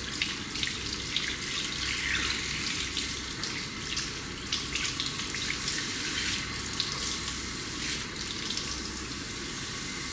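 Handheld shower sprayer running steadily into a shampoo basin, water splattering on a reclined person's face and wet hair as a hand rinses the cleanser off the skin.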